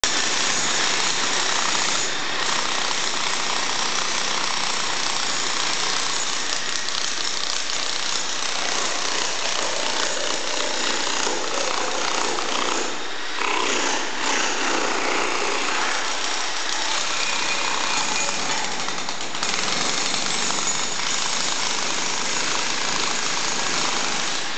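Corded electric demolition hammer hammering continuously, its chisel bit chipping floor tiles off a concrete slab, letting up briefly a couple of times midway.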